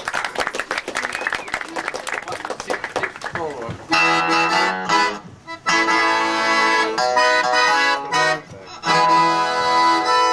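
Piano accordion playing the opening of a song, held chords that come in about four seconds in and run in phrases broken by short pauses, with acoustic guitar alongside. Before the accordion enters there is a busy stretch of clatter and voices.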